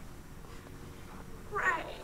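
Quiet room tone, then a woman's voice saying one word in a high, wavering pitch about one and a half seconds in.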